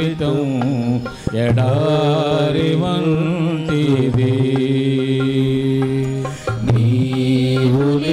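A man singing a slow Telugu devotional hymn in long held notes that waver and glide in pitch. It breaks off briefly about a second in and again shortly before the end.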